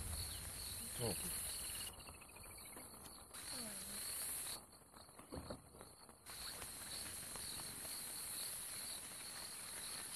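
Night-time insect chorus: crickets chirping steadily in a high, pulsing trill. The trill thins out briefly twice in the middle.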